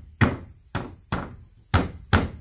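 Claw hammer striking into a wooden strip on a plank floor: four sharp blows, about two a second, each dying away quickly.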